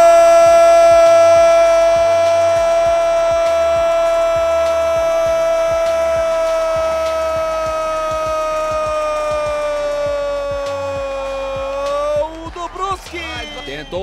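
A football commentator's long goal cry, "Gol!" held on a single note for about twelve seconds, its pitch slowly sagging. Near the end he breaks off into rapid speech.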